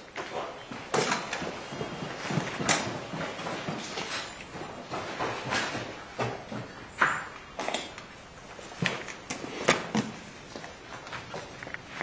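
Scattered sharp knocks and pops at irregular intervals, along with footsteps, in a large hall.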